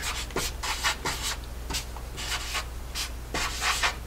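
Marker writing on a blackboard: a run of short scratchy strokes, a few a second, as numerals are written out.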